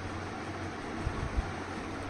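Steady background hiss with a low hum in a small room between sentences, and a couple of faint low thumps a little after a second in.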